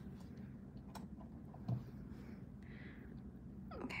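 Quiet room hum with a few faint light clicks of a nail-art brush and stamping tools being handled on a table; a spoken "okay" comes near the end.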